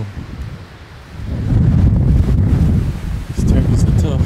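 Wind buffeting the camera microphone as a low rumble. It eases off briefly about half a second in, then comes back strongly from about a second in.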